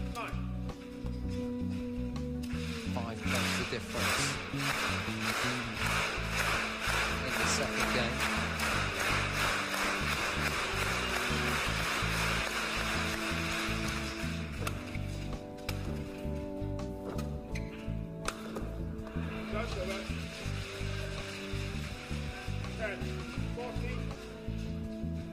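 Background music with a steady bass runs throughout. Under it is badminton arena sound: crowd noise that swells through the first half and again near the end, with sharp racket strikes on the shuttlecock.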